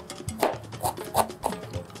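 Chef's knife chopping fresh parsley on a plastic cutting board: a handful of irregular blade strikes, over background music.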